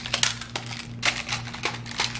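Clear plastic PicassoTiles magnetic building tiles clacking and snapping against each other as they are handled and fanned out: a quick, irregular run of sharp plastic clicks, loudest in the first half second.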